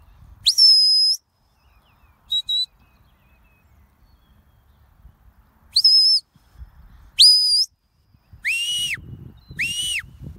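Sheepdog handler's whistle commands: a string of sharp, high whistle blasts, several sweeping up at the start, with two quick pips about two and a half seconds in. The last two blasts, near the end, are lower and drop in pitch as they stop. A low rumble builds under them near the end.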